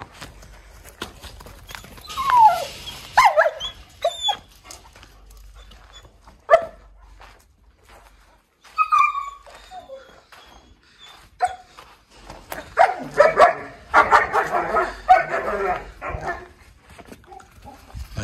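A dog whining and barking at intervals: a few short falling whines in the first seconds, scattered yelps, and a busier run of barks near the end.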